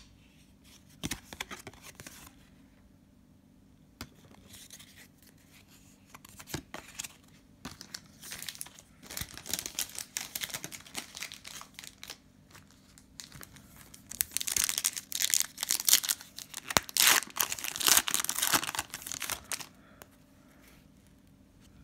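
Plastic trading-card pack wrapper being handled, torn open and crinkled. A few light clicks come first, then the crinkling and tearing builds from about eight seconds in and is loudest near the end.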